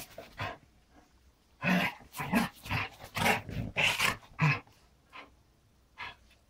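A dog making a quick run of short, rough vocal sounds, starting about two seconds in and lasting about three seconds.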